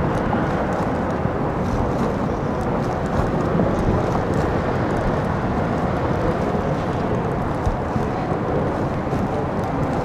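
Aircraft passing overhead: a steady, broad rumble with no clear rise or fall.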